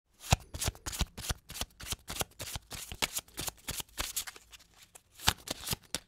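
Playing cards being shuffled and handled: a quick, irregular run of sharp card snaps and riffles, ending abruptly.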